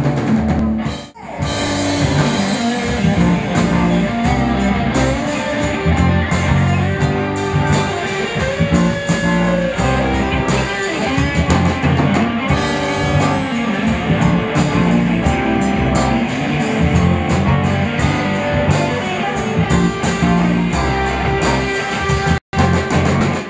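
Live rock band playing an instrumental passage: electric guitar over drum kit, bass and keyboards. The band stops for a moment about a second in, then plays on.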